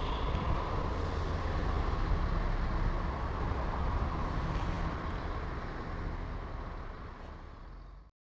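BMW F650 motorcycle engine idling steadily while the bike stands, fading out near the end.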